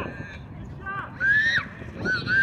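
Basketball sneakers squeaking on an outdoor painted court surface. There are a few short, high squeals, and the loudest comes a little past a second in.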